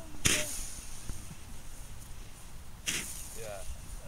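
Firework tube firing two shots about two and a half seconds apart, each a short hissing whoosh as a burning ball is launched into the air.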